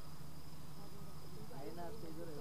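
Faint open-air ambience on the playing field: a steady high-pitched whine and a low hum, with faint distant voices calling that grow a little clearer in the second half.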